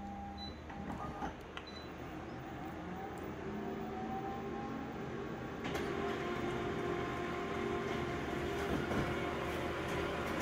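Office multifunction photocopier running, with a rising whir a few seconds in. It gets louder and busier about six seconds in as it starts printing the copy.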